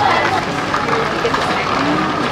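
Voices and chatter of people in a busy public space, with a steady background hubbub.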